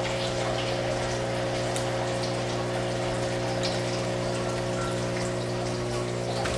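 Aeroponic tower garden's water pump running with a steady electrical hum, water trickling and pattering inside the tower, which the grower puts down to an empty tank. A few faint clicks of plastic parts being handled.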